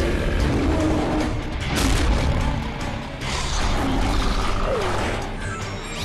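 Dramatic action-cartoon score mixed with battle sound effects, with sudden noisy hits about two and three seconds in.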